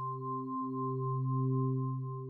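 Logo intro sound: a sustained electronic tone of several steady pitches, ringing on after a struck start, swelling slightly and beginning to fade near the end.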